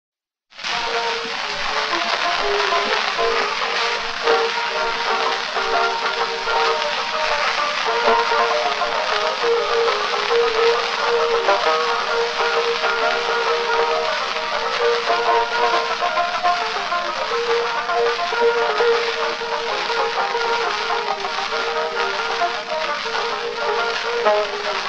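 An 1898 phonograph recording of a march plays under a heavy, steady surface hiss, the tune thin and narrow in range. It starts about half a second in.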